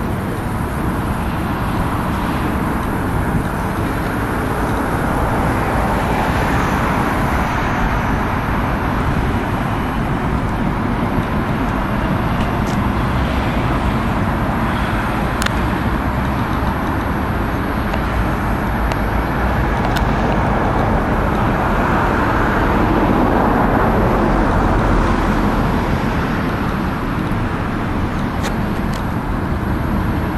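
Steady road-traffic noise that swells louder twice as the traffic goes by.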